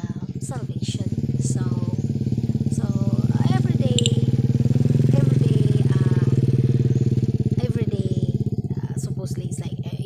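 Motorcycle engine running close by, growing louder to a peak around the middle and easing off again, with voices over it.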